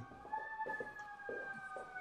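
Faint fire engine siren from outside: one long wail that slowly falls in pitch.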